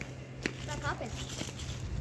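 Faint, indistinct voices in the background, with a single sharp click about half a second in, over a low steady hum.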